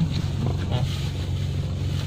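Car engine idling, a steady low hum heard from inside the cabin.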